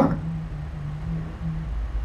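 Pause in speech: low room hum and rumble, with a faint steady low tone that fades out shortly before the end.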